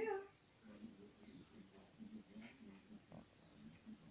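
A cat gives one short meow right at the start, followed by faint, low, uneven sounds.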